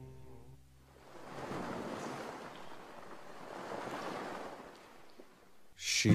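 The last notes of a song fade out in the first second. Then a soft wash of noise like ocean surf swells and ebbs for about four seconds. Music starts again loudly right at the end.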